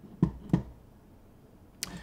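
Two sharp computer-mouse clicks about a third of a second apart, then a short hiss near the end.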